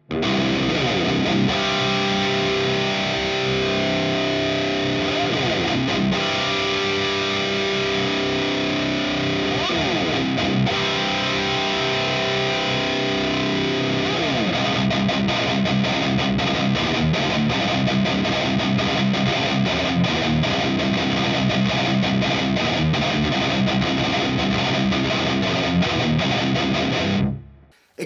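High-gain distorted electric guitar in drop C playing a heavy riff through a simulated Mega 4x12 Traditional cabinet miked with a Ribbon 160, its EQ being adjusted as it plays. A few quick slides along the way; the playing stops abruptly just before the end.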